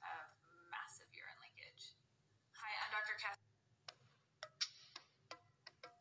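A woman speaking in short bursts for the first half, then a run of short, sharp clicks, about eight of them, in the second half.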